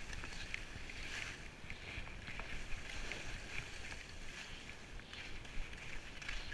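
Skis sliding and scraping over packed, chopped-up piste snow: an uneven hiss that swells in short scrapes several times a second as the edges bite. A low wind rumble on the microphone runs underneath.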